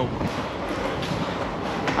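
A train running in an underground railway station: a steady noise with no distinct strokes.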